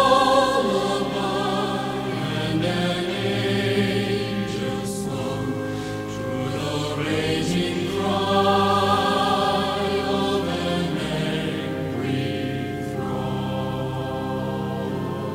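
Choir singing an anthem in sustained chords, with organ accompaniment underneath.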